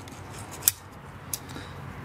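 Two small metallic clicks, a loud one and then a fainter one about two-thirds of a second later, as a thin wire retaining clip is worked out of the outlet of an FMF silencer's end cap to free the dB killer.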